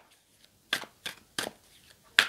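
Tarot cards being handled: a few sharp snaps and clicks, the two loudest about three-quarters of a second and a second and a half in, with quiet between.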